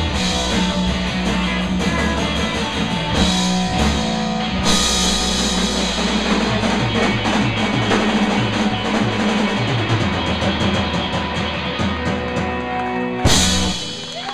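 Live rock band playing loud: distorted electric guitar, bass guitar and drum kit, with the drums hammering out a fast run of strokes in the second half. The song ends on one last loud crash about a second before the end.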